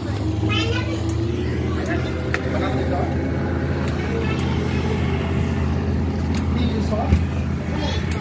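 Houseboat engine running with a steady low drone, with people's voices over it.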